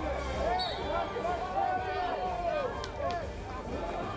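Voices calling out over crowd babble, in short bursts of shouted words throughout, with a couple of faint clicks about three seconds in.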